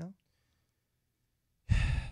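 A short pause of near silence, then a man's loud, breathy sigh into a close studio microphone near the end.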